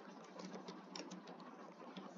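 Computer keyboard being typed on: a quick run of about nine faint key clicks over the first second and a half, over a steady low hiss.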